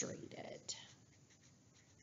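Faint strokes of a felt-tip marker writing a word on paper, mostly in the first second.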